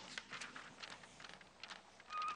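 Pencil sketching on paper: a faint run of quick, irregular scratchy strokes.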